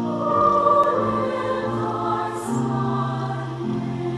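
A choir singing, holding sustained chords that shift a couple of times.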